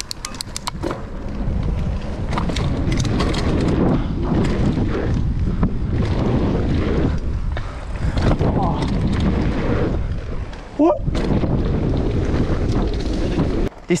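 Wind buffeting an action camera's microphone over the rumble and rattle of mountain bike tyres rolling fast down a dirt trail, with clicks and knocks from the bike over bumps early on. A short exclamation from the rider just before 11 s.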